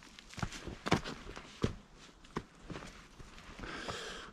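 Footsteps through dense leafy undergrowth, a handful of irregular steps with plants brushing and rustling against the legs.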